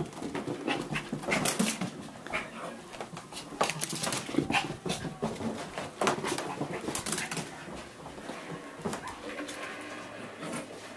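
Small dog playing with a sock, making dog sounds, with many irregular clicks and scuffles as it runs and shakes it.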